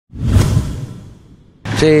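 Whoosh sound effect of a TV news logo ident: a swell of rushing noise over a low rumble that peaks almost at once and fades away over about a second. It is cut off near the end by a man's voice.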